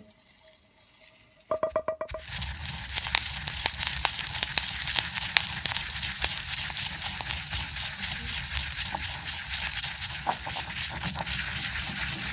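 Dry-roasted whole spices (peppercorns, cumin and coriander seeds, dried fenugreek leaves) being ground in a granite mortar with a stone pestle: a few knocks, then from about two seconds in a steady crunching and scraping with many small clicks.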